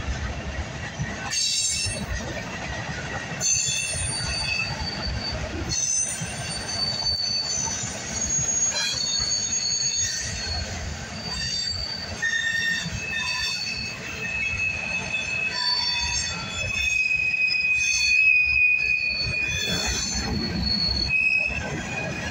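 Freight cars of a Union Pacific manifest train rolling past, a steady rumble of steel wheels on rail with occasional knocks. High, thin wheel squeals come and go over the top, one held squeal strongest near the end.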